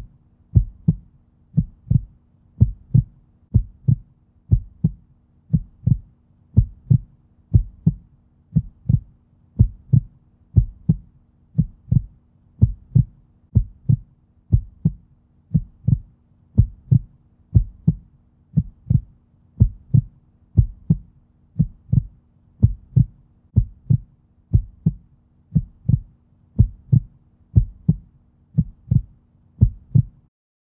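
A low, steady thumping pulse like a heartbeat sound effect, about two beats a second, with a faint steady low drone underneath.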